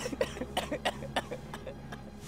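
A man sobbing: a quick, uneven run of short, gasping catches of breath.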